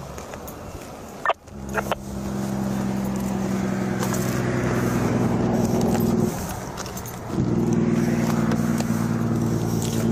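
Police SUV engine idling, a steady low hum, with a sharp click about a second in and a brief dip in the hum about two-thirds of the way through.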